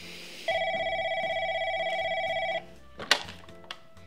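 Beige push-button desk telephone giving one electronic trilling ring of about two seconds. About three seconds in there is a sharp clack, with a smaller one just after, as the handset is lifted from its cradle.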